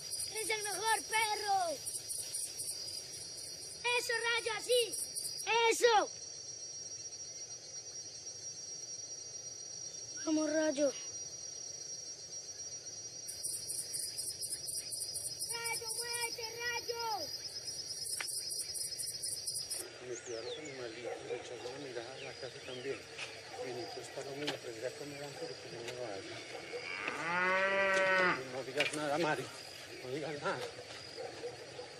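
Crickets chirping in pulsed trains over a steady high insect whine, which stops about two-thirds of the way through. Near the end a cow moos once, a long low call of about two seconds.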